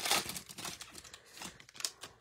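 Foil wrapper of a trading-card pack being torn open and crinkled by hand. The crackling is loudest in the first half second and thins out, with one last sharp crinkle near the end.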